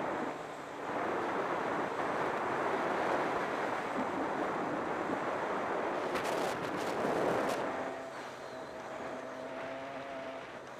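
Wind rushing over a helmet-mounted camera as a Honda CR125 two-stroke dirt bike rides along a gravel track, with the engine mixed in. There is a run of sharp clicks about six seconds in. After about eight seconds the wind eases and a steady engine note comes through.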